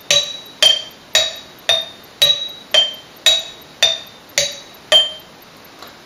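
Glass jam jars struck with thin sticks, about ten clinks at a steady two a second, each ringing briefly at a high pitch that varies from jar to jar. It is one part of a polyrhythm, cycling through four jar sounds, and it stops about five seconds in.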